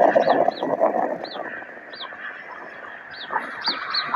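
A bird chirping repeatedly in short, falling notes over a rush of outdoor noise that fades after the first second or so.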